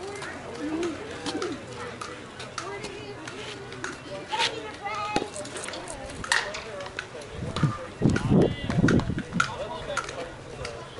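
Players and spectators talking and calling out across a softball field, with scattered short knocks and clicks. Louder low rumbles come in near the end.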